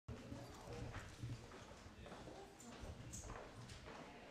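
Irregular footsteps and light knocks on a wooden floor, over faint murmured conversation.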